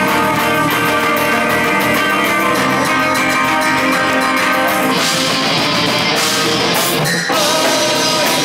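Live heavy rock band playing: distorted electric guitars over a drum kit with fast, even cymbal strokes. About five seconds in the cymbals drop away, and after a brief break near the end the band comes back in on a new section.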